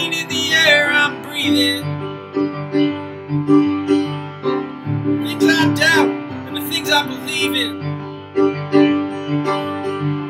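Acoustic guitar played solo, picked and strummed notes in a steady rhythm: the instrumental break of a song played without a band.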